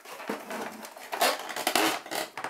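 Cardboard toy-box packaging being handled and turned over: irregular scrapes and taps of the card.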